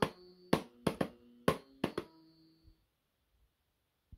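LeapFrog Learning Drum toy's drum pad slapped by hand about seven times in two seconds, each hit setting off a short electronic musical note from its speaker that rings on briefly. The playing stops about two seconds in.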